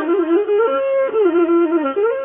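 Traditional Amhara music: a flute-like wind instrument plays a short melody, stepping between steadily held notes.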